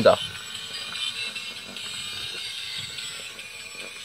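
Small battery-powered bump-and-go toy truck driving itself, its little geared motor running with a steady mechanical whir.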